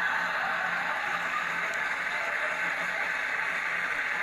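Studio audience laughing and applauding at a joke's punchline, as a dense, steady wash of clapping.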